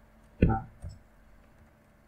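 A short wordless vocal sound from a man, followed by a smaller one, with a few faint computer mouse clicks.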